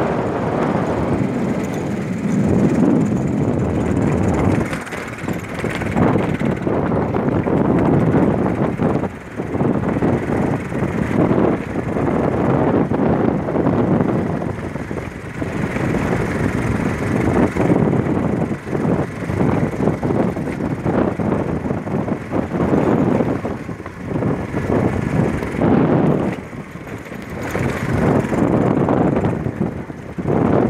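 A vehicle driving along a rough dirt road, heard from on board: continuous engine and road noise that swells and dips every few seconds, with frequent jolts and rattles.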